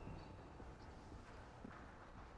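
Near silence: faint low background noise between narration.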